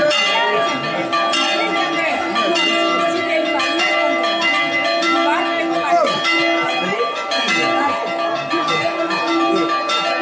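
Two church bells rung by hand in a belfry, struck in a fast, unbroken pattern of strokes, their tones ringing on and overlapping.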